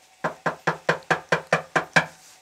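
A hand knocks rapidly on the bare sheet-metal panel of a LOVOL 1054 tractor cab, about nine quick, evenly spaced knocks, each with a short metallic ring. The panel is stripped of trim and not yet lined with sound-deadening mat, so the bare metal rings.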